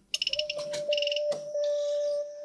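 Rapid runs of short, high electronic beeps from a DDS function generator's rotary knob as the test signal's amplitude is turned up, with a steady tone held underneath from shortly after the start.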